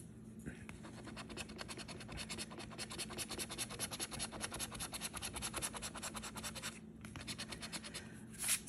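Scratch-off lottery ticket being scraped with a round scraper: quick, even rubbing strokes, several a second, starting about half a second in, with a brief pause near the end before the scraping resumes.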